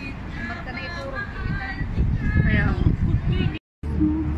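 Indistinct voices of people talking nearby over a steady low rumble, louder in the second half; the sound cuts out completely for a moment near the end.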